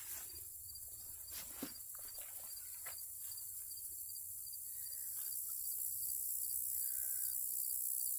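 Clicks and rustles of a notebook and a fabric pencil bag being handled and pulled from a backpack, busiest in the first few seconds, over a steady high-pitched chorus of field insects such as crickets.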